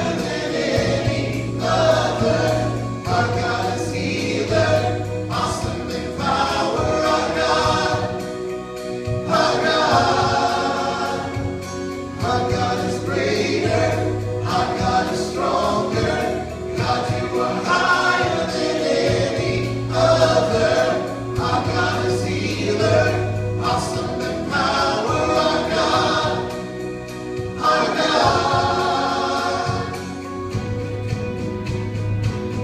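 A live worship band performing: singing voices over acoustic guitar, with a held low bass note under parts of the song.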